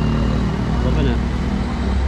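Urban street traffic, a vehicle engine's steady low rumble running throughout, with people's voices mixed in.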